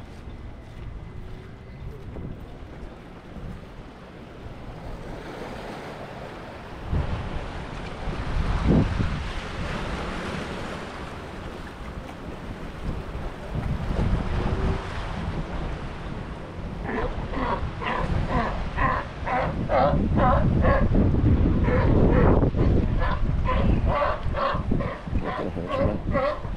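Wind buffeting the microphone over waves washing against lava rocks. From about two-thirds of the way in, a Galápagos sea lion barks in a fast repeated series, about two to three barks a second.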